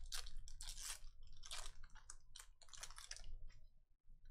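Crinkling and crackling of a plastic trading-card wrapper being handled and pulled open, in a run of irregular bursts that dies away near the end.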